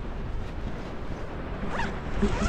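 Airflow rushing over a helmet-mounted action-camera microphone during a parachute canopy descent, with wingsuit fabric fluttering in the wind. A brief sliding squeak comes near the end.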